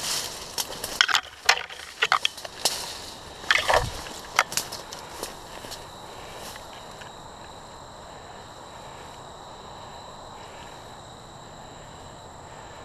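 Dry brush and fallen sticks crackling and snapping underfoot as a person pushes through undergrowth, in irregular bursts over the first six seconds. After that it goes quiet apart from a faint steady high-pitched tone.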